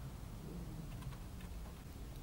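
A few faint, light clicks as a soldering iron tip is worked against a small metal shim and wire winding, over a low steady hum.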